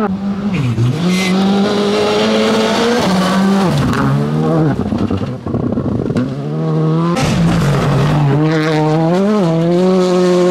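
R5 rally cars (a Skoda Fabia, then a Ford Fiesta) driven hard on gravel. The engine revs high, and its pitch drops sharply and climbs again several times at gear changes and lifts through the bends, over a hiss of tyres and spraying gravel.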